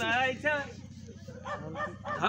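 A man's voice in drawn-out, wavering phrases, one at the start and another near the end with a quieter gap between, over a steady low hum.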